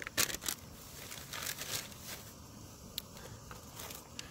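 Foil-laminate ration pouch crinkling and rustling as it is handled, in several short irregular bursts.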